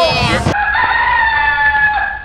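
A long, high, pitched call that starts abruptly about half a second in, holds steady with a slight waver, then dips and stops just before the end; a short gliding call comes before it.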